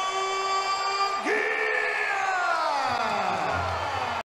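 A boxing ring announcer's long, drawn-out call of the winner over a cheering crowd. One held note jumps higher about a second in, then slowly falls away.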